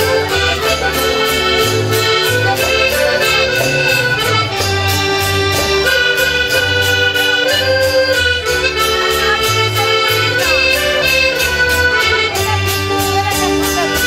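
Instrumental folk music played live: acoustic guitars strummed steadily, about three strokes a second, under an accordion playing a melody of held notes over a pulsing bass line.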